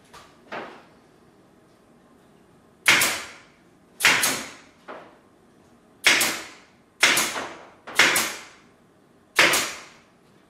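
Staple gun driving staples through convertible-top fabric, six sharp shots about a second apart, each a crack that trails off quickly. Two fainter clicks come just before the first shot.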